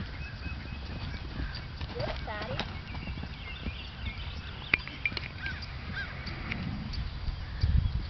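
A foal's and a mare's hooves on the soft dirt of a pen, under a steady low rumble of wind on the microphone that swells near the end. Birds chirp throughout, and a short wavering honk-like call sounds about two seconds in.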